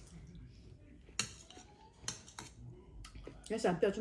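A metal spoon clinks against a ceramic bowl about five times, sharp and short, as it scoops up soup. A voice begins shortly before the end.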